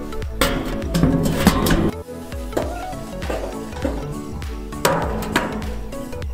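Background music with a steady beat and a few sharp hits.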